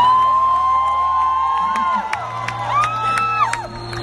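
Concert crowd cheering, with long high-pitched screams from fans: one held across the first two seconds, another about three seconds in. A low steady note sounds underneath.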